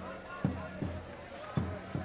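Deep drum beaten in a steady two-beat pattern, about one pair of beats a second, each beat a low thud with a short ring, over the voices of a crowd.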